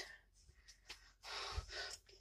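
Mostly quiet, with one faint breath of air lasting about half a second, from a person breathing out close to the microphone, around one and a half seconds in.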